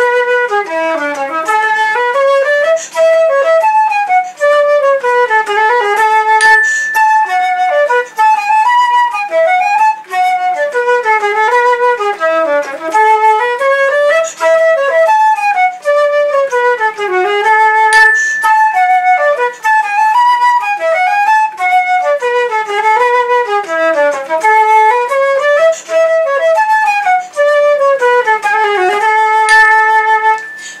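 Solo concert flute playing a Swedish folk tune: a quick, unbroken melody of running notes that rise and fall in short phrases.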